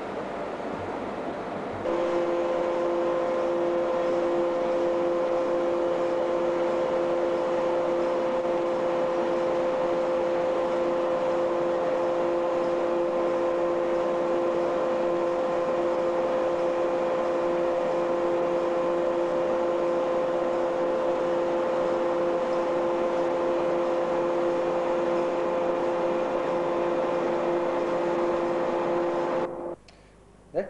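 Fatigue-testing rig running as it loads a component: a steady machine hiss with a constant two-note hum that comes in about two seconds in and holds without change until it cuts off near the end.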